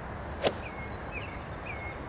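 A golf club striking a ball from fairway turf, taking a divot: one sharp crack about half a second in.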